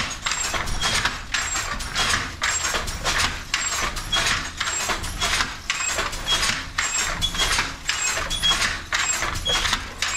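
Wooden handloom with a jacquard card attachment at work: a steady rhythm of clacks, about two a second, with a short high squeak about once a second.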